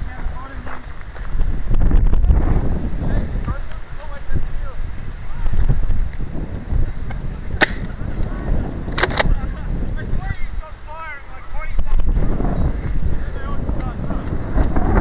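Wind and movement rumbling on a moving body-worn camera's microphone, with distant shouting voices and a few sharp clicks a little past the middle.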